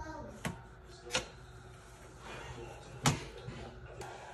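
Three sharp clacks of things knocking on a metal baking sheet as produce and a knife are moved about on it, the last clack the loudest, with faint handling noise between.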